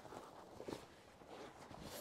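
Faint rustling of a padded horse blanket being folded and handled, with a few soft knocks.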